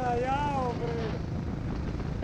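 A go-kart running on the track gives a steady low rumble, mixed with wind on the microphone, while a voice calls out briefly in the first second.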